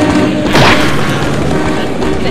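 Background music with a loud crash sound effect about half a second in, sweeping down in pitch as it fades, for a figure being knocked to the ground.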